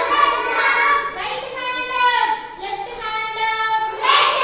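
Young children singing an English action rhyme in chorus. About a second in, the chorus thins to a few high voices holding notes that step up and down.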